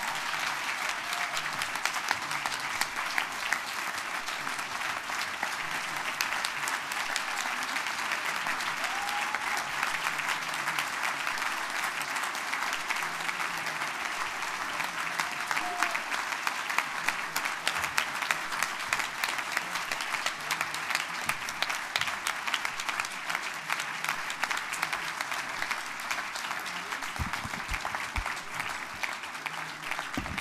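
An audience applauding at length: many hands clapping together at a steady level, with a few voices faintly heard over it.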